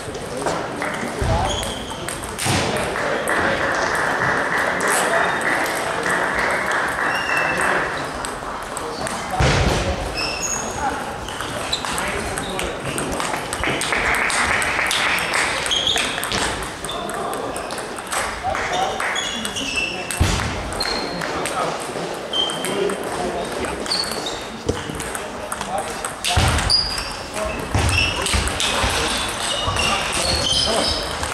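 Table tennis ball clicking off bats and the table in sharp ticks during rallies, with voices in the background.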